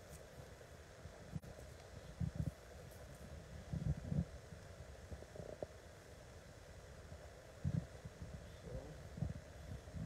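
Footsteps on hardwood stairs and floor: a few dull, low thumps at irregular intervals over a faint steady room background.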